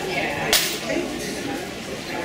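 A single sharp snap about half a second in, over the murmur of voices on a busy street.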